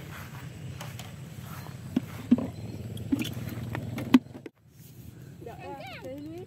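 Small motorcycle engine idling with a steady low hum and a few light knocks. The hum cuts off abruptly about four and a half seconds in.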